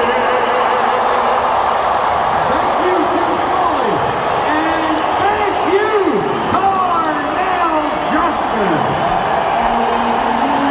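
Large arena crowd cheering and yelling as the anthem ends, a continuous loud din of many voices. From about two and a half seconds in, individual voices whoop and shout above it.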